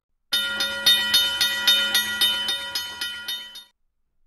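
Short intro sound effect: a held chord of steady tones over an even, rapid beat of about four strokes a second. It starts sharply, slowly fades, and cuts off just before the end.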